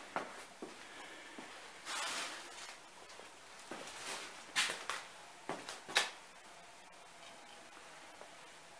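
Scattered light footsteps, scuffs and knocks of someone moving about in a small room. There is a short rustle about two seconds in and a sharp click about six seconds in.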